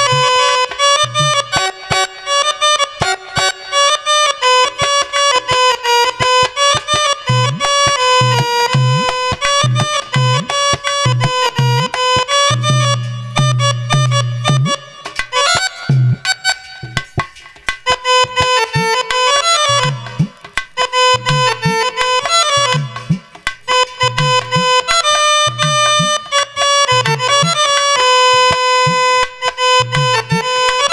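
Instrumental interlude of a live bhajan band: a Yamaha PSR-I455 electronic keyboard plays a continuous melody over a regular dholak drum beat.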